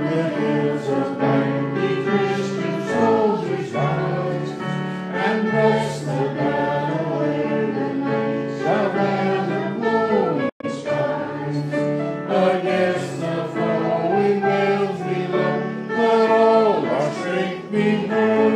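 Congregation singing a gospel hymn together with instrumental accompaniment. The sound drops out for a split second about ten and a half seconds in.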